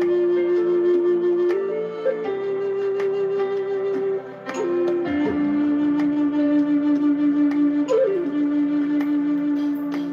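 Large wooden Native American-style flute playing a slow melody of long held notes, with short ornamental flourishes between them, about two seconds in, around four to five seconds in and about eight seconds in.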